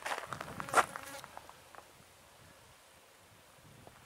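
A fly buzzing briefly past close by, with a few footsteps and one sharp click in the first second; then a quiet outdoor background.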